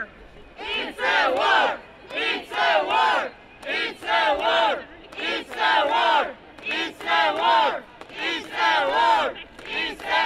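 Crowd of protesters chanting a short slogan in unison, shouted phrases repeated about every one and a half seconds, some seven times.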